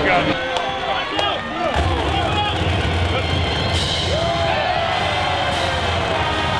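Football stadium crowd noise after a few spoken words, with a marching band's music coming in near the end.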